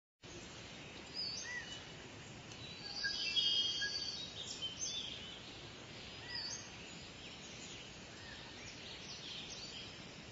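Forest ambience with several small birds chirping and calling over a low steady background, with a louder, busier flurry of calls about three to four seconds in.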